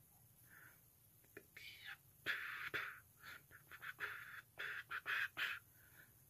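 A man whispering under his breath in a string of short, faint bursts.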